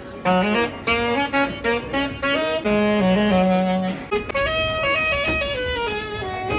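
Saxophone playing a melody of short and held notes, amplified through a clip-on microphone on its bell.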